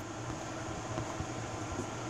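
Steady hum and airy hiss of a ventilation fan running in an indoor grow tent.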